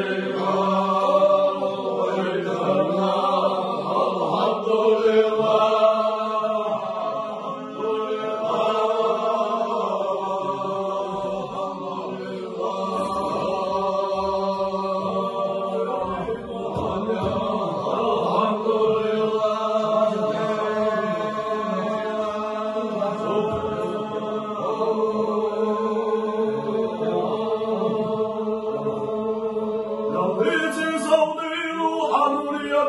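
A group of men's voices chanting zikr, the Sufi remembrance of God, together in one continuous chant over a steady low held tone.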